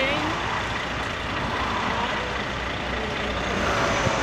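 Highway traffic noise: the steady rush of passing trucks and cars, growing louder near the end as a vehicle comes closer.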